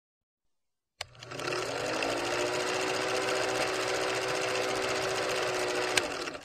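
Film projector sound effect: a rapid, steady mechanical rattle over a motor hum. It starts with a click about a second in, and the hum rises briefly in pitch as the mechanism comes up to speed.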